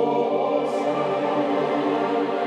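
Gregorian-style chant sung by a choir in long, held notes.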